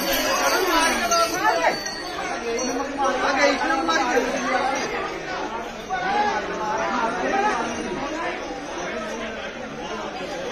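Several people talking and shouting over one another, a loud and excited jumble of voices with no single speaker standing out.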